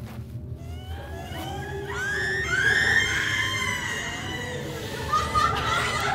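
A woman's high-pitched cries and screams, rising and falling, over a low droning music score; more voices join near the end.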